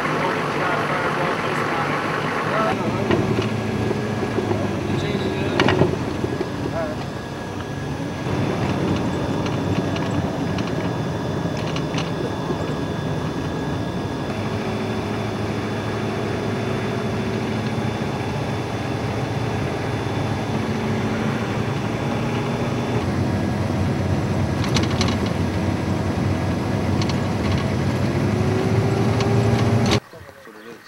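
A military vehicle's engine running with road noise as it drives: a steady low drone with a faint whine, broken by a few knocks, cut off suddenly at the end.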